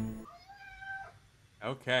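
Background music cuts off just after the start, followed by one short, faint cat meow lasting under a second.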